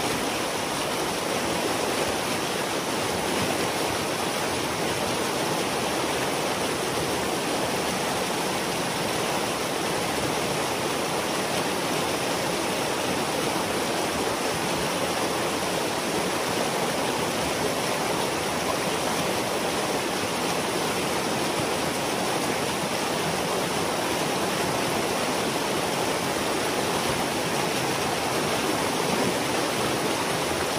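Water rushing steadily through a breach in a beaver dam, the pond behind draining through the gap in a churning white-water torrent.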